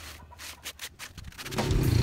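Sandpaper, 100 grit, rubbed by hand over the textured paint coat of a wooden speaker box: a few short, irregular scratchy strokes. A louder low rumble rises near the end.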